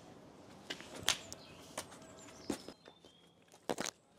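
A climber's shoes and hands scuffing and tapping against granite while moving up and topping out a boulder: a handful of short, sharp scrapes and knocks, the loudest two close together near the end. Faint birdsong sits behind.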